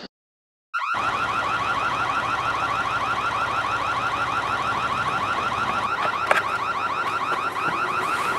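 Car alarm sounding, a rapid train of repeating rising chirps over a steady hiss, starting just under a second in after a brief silence.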